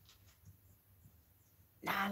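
Quiet room with a few faint, light ticks, then a woman's voice starts loudly just before the end.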